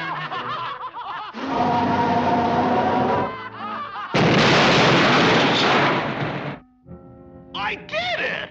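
Cartoon sound effects over orchestral music: snickering laughter, then a rushing blast of noise. About four seconds in, a sudden very loud blast runs for some two and a half seconds and cuts off: the sound effect of the brick house being blown down.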